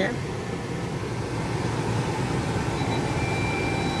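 Steady cabin hum inside a 2019 Bentley, from the idling engine and climate fan. A faint, high, steady tone comes in near the end.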